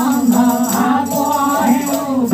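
Live Odia Pala folk music: a voice singing a wavering melody over a steady low drone, with continuous rattling, jingling percussion.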